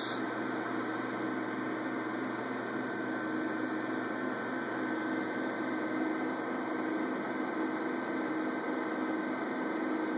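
A desktop PC's many cooling fans, among them the Corsair H100i radiator fans, running together in a steady whir with a low hum while the CPU is under full stress-test load.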